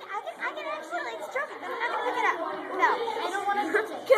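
Several children's voices chattering over one another, with no single clear speaker.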